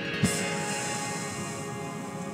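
Soft background music with sustained tones, under a long, airy breath out through the mouth that fades away over a second or so: a deep, slow exhale for a guided breathing exercise.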